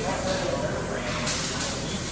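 A man's drawn-out hesitation sound between phrases, over a steady low hum, with a short hiss about halfway through.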